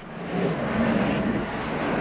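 A steady rushing, rumbling noise that swells in over the first half second.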